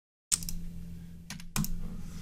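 Computer keyboard keystrokes: a few sharp key clicks, two close together near the start and two more over a second in, over a low steady hum.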